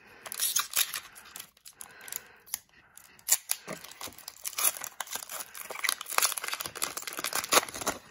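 Foil wrapper of a 2019-20 SP Authentic hockey card pack being torn open and crinkled in the hands as the cards are pulled out, with irregular sharp crackles and rustling.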